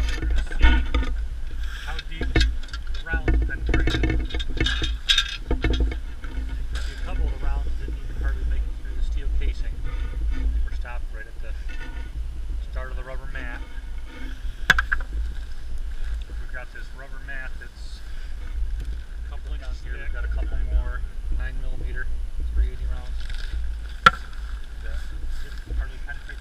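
Wind buffeting the microphone with a steady low rumble, over crinkling of plastic sheeting and handling of the rubber-filled drum, with many small crackles and two sharp clicks, one in the middle and one near the end.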